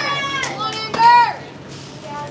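Children's voices shouting and calling out, with one high, loud call about a second in, then quieter background chatter.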